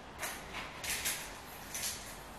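Four short rustling clicks of small handling noise as loose golden bead units are picked up from a wooden bead box.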